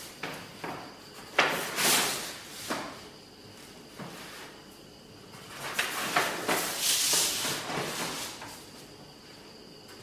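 Heavy kraft paper rustling and a long straightedge sliding and knocking across it on the bench, in two scraping stretches: a short one about a second and a half in and a longer one from about six to eight seconds.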